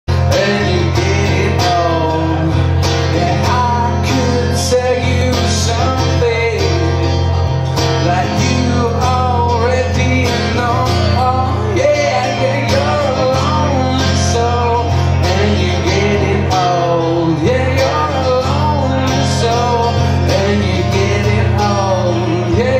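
Live band playing a song: a man singing over guitar, with a steady drum beat.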